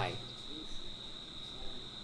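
A steady, unbroken high-pitched tone sounds through a pause in speech. A man's last word trails off just before it.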